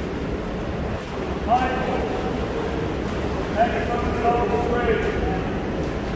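Raised voices calling out twice, one short call about a second and a half in and longer drawn-out calls near the middle to end, over a steady noise of the pool hall.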